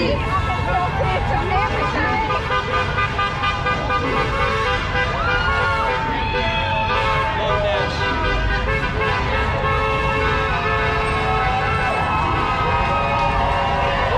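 Crowd of marchers passing close by, many voices and shouts overlapping, with long, steady car-horn toots sounding over them throughout.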